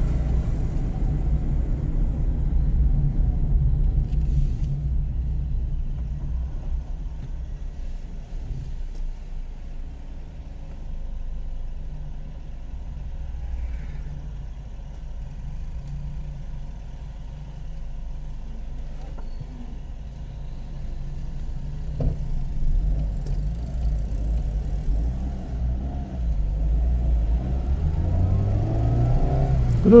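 A car driving through city streets: low engine and road rumble that eases through the middle and builds again. Near the end the engine note climbs in pitch as the car speeds up.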